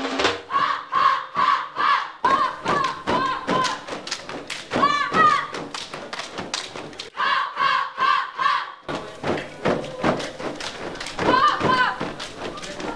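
A dance troupe chanting in unison while beating quick, tightly synchronised rhythms with hand claps and slaps on their bodies, the body percussion of an Indonesian Saman-style sitting dance. The voices rise into louder calls near the middle and again near the end.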